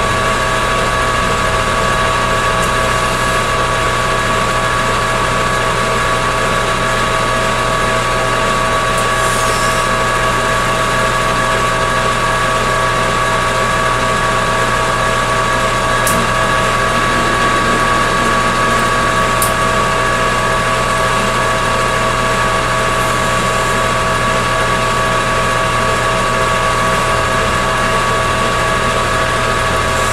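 Metal lathe running at a steady speed during single-point threading of a stainless steel part: an even machine whine of several steady tones over a low hum.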